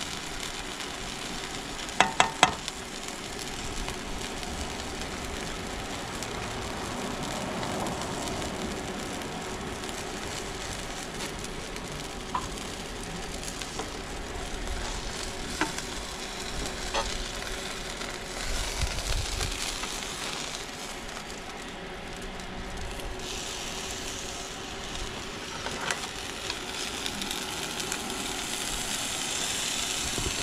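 Corn tortilla tacos filled with beef and cheese frying in oil in a frying pan, with a steady sizzle. A quick run of sharp clicks comes about two seconds in, and a few single ticks later on.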